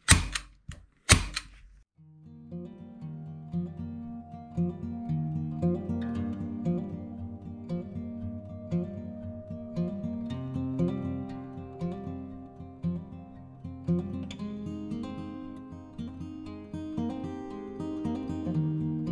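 Two sharp clacks of a hand staple gun driving staples through a bass skin into a foam body, about a second apart, then acoustic guitar music from about two seconds in.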